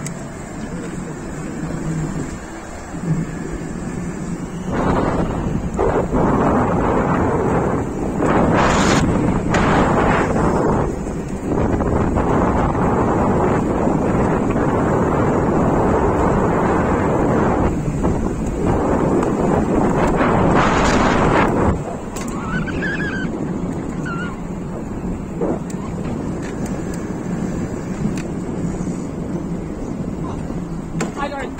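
Wind rushing over the microphone of a camera on a moving e-bike. The rush grows much louder about five seconds in and drops back sharply a little after twenty seconds in.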